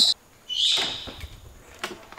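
A parrot's short call about half a second in, followed by a single click near the end.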